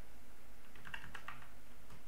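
Computer keyboard keys clicking: a quick run of several key presses near the middle, over a faint steady hum.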